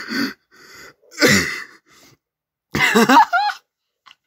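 A person laughing hard in three loud, breathy bursts, the last ending in a wavering, high-pitched squeal.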